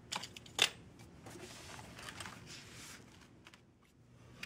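Small objects being handled and set down on a tabletop: a few light clicks and a sharper knock about half a second in, then faint rustling that stops shortly before the end.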